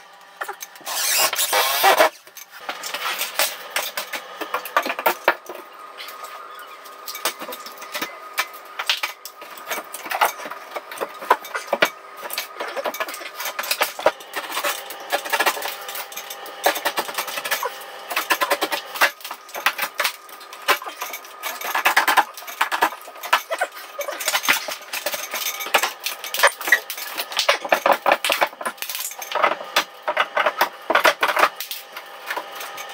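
Hand work on a plasterboard and stud-wall job: irregular clicks, knocks and small rattles with scraping, after a louder rasping noise in the first two seconds.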